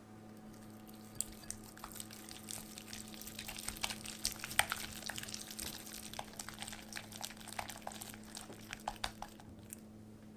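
Wire whisk beating softened cream cheese in a glass bowl: a continuous run of wet squelching clicks, with the whisk ticking against the glass.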